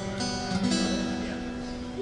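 Acoustic guitar strummed: a chord struck about half a second in and left to ring out, the close of a song.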